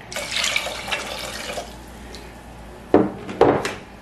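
Liquid poured from a glass measuring cup into a stainless steel pot, splashing for about a second and a half. Near the end come two sharp knocks as the glass cup is set down.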